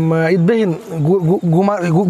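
A man speaking, close to the microphone, with no other sound standing out.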